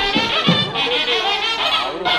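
Nadaswaram, the South Indian double-reed pipe, playing a Carnatic melody with sliding, wavering pitch bends. Two drum strokes land in the first half second.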